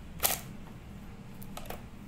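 A sharp click about a quarter second in, then two fainter clicks later on, as a laptop hard drive in its metal bracket is pried up and lifted out of its bay in the laptop's plastic base.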